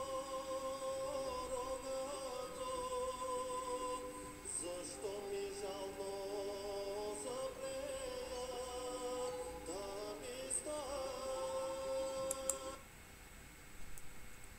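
Bulgarian folk singing by a man's voice, held long notes with slow ornamented bends, sung in chest voice with no falsetto. The singing cuts off about 13 seconds in.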